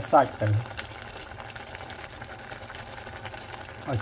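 Water boiling in a stainless saucepan full of blanching leafy greens: a steady bubbling hiss with a few faint pops.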